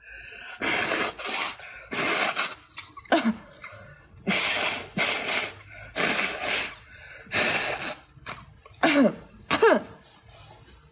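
A woman blowing her nose into a tissue: a series of short, forceful blasts of air through the nose, mostly in pairs with pauses between. Near the end come two brief falling vocal sounds.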